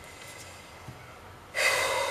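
A sudden sharp breath close to the microphone, starting near the end and fading away over about a second.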